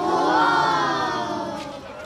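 A group of children letting out a long, drawn-out "ooh" of wonder together, rising a little and then falling away and fading about a second and a half in.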